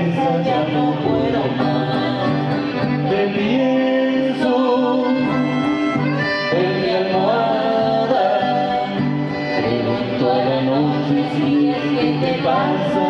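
A chamamé song played live on button accordion, its melody moving in steps and glides, with a young male voice singing over it.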